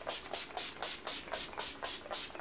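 Urban Decay All Nighter setting-spray pump bottle spritzed rapidly over and over, about four or five short hissing sprays a second.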